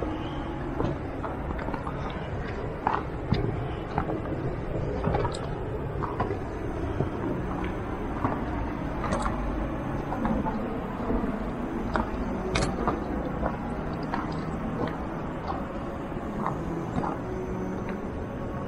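Footsteps on a gravel and stone trail, irregular steps against a steady low rumble of outdoor noise.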